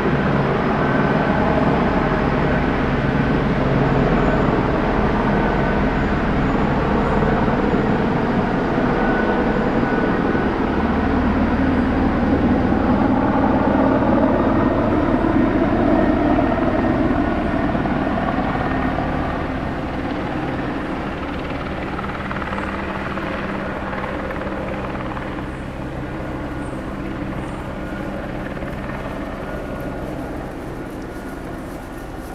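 Steady low drone of a passing engine, its pitch gliding slowly. It is loudest about halfway through and fades away over the last ten seconds.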